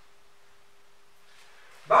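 Quiet room with a faint steady hum; a man's voice starts near the end.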